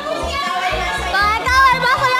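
Children's voices and chatter over background music with a steady beat.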